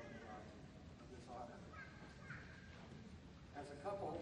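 Faint, indistinct voices in short broken phrases.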